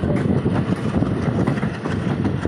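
A passenger train running along its track, heard from the open doorway of one of its own moving coaches: a steady loud rumble of wheels and coaches with many quick rattles and clicks through it.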